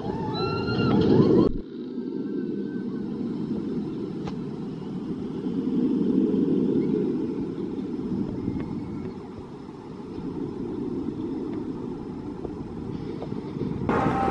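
Riders screaming briefly as a B&M hyper coaster train crests an airtime hill. After an abrupt cut, the train's steel wheels rumble along the track, swelling and then fading as it passes.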